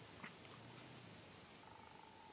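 Near silence: a faint low background hum, with one brief faint chirp about a quarter of a second in and a faint steady whistle-like tone starting near the end.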